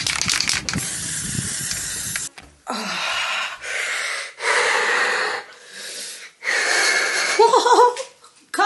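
An aerosol spray-paint can hissing for about two seconds, with wind rumble. Then a woman coughing hard into her fist: about five long, wheezy coughs, ending in a short voiced groan.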